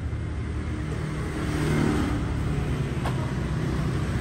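A motor vehicle engine running steadily, a low rumble that grows a little louder about halfway through, with one brief click near the end.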